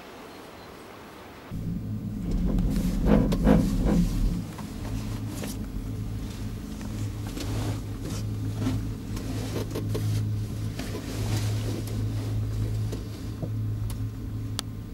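Gondola lift ride heard from inside the cabin: a steady low hum with clicks, and a loud burst of clattering and rumbling about two to four seconds in. It begins abruptly about a second and a half in, cutting off a faint hiss.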